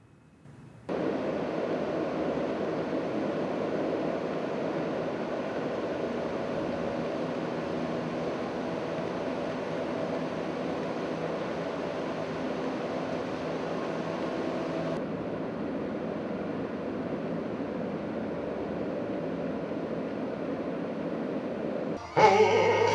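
A steady rushing noise starts suddenly about a second in and carries on unchanged, its hiss dulling about fifteen seconds in.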